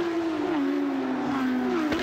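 Porsche 911 GT3 Cup race car's flat-six engine running, its note falling slowly through most of the stretch, then dipping and rising again near the end.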